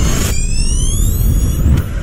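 Logo intro sting: a synthesized sound effect with a deep rumble under several rising whooshing sweeps, fading out near the end.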